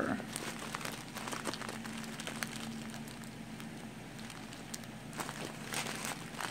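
Clear plastic bag of loose holographic glitter crinkling as fingers squeeze and turn it, a continuous run of small crackles.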